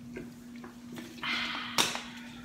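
A small plastic water bottle being handled as a toddler drinks from it. There are a few faint clicks, then a short rustling rush about a second in, ending in a sharp click near the end.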